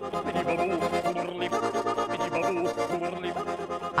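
A man's overtone singing: a steady low drone, with higher whistling tones moving above it.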